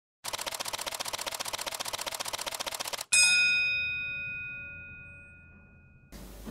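Title-sting sound effect: a fast, even mechanical ticking for about three seconds, cut off by a single bright bell strike that rings on and slowly fades.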